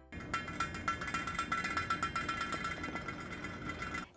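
Saladmaster Vapo-Valve on a stainless steel skillet lid clicking rapidly and steadily, a metallic chatter with a ringing note, as steam vents through it. The clicking signals that the pan has reached cooking temperature and the heat should be turned down from medium to low.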